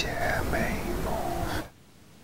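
A man singing a line of a pop ballad softly and breathily, close up and without backing music; his voice stops about a second and a half in.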